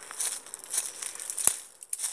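Crackling, rustling noise of walking and handling while moving through bush with a hand-held phone, in crisp bursts about three a second, with one sharp click about one and a half seconds in.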